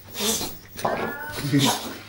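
British bulldog making noises as it rolls about in play: noisy breathy bursts and, about a second in, a short whining cry.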